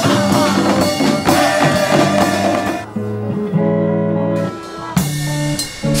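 A band playing with a drum kit keeping a steady beat. About halfway in the beat drops out for long held chords, and it returns near the end.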